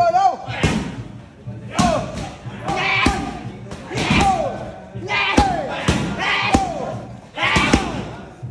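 Strikes landing on a trainer's Thai pads during Muay Thai pad work: a sharp smack about once a second, seven in all, each met by a short shout with a falling pitch.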